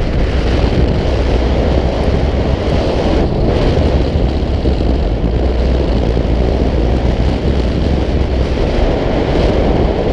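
Wind buffeting an action camera's microphone in paragliding flight: a steady, loud rumble with a hiss over it.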